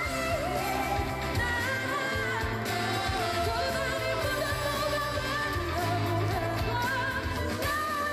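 A female vocalist singing a Korean pop ballad live with band accompaniment, holding long, wavering notes over a steady bass line.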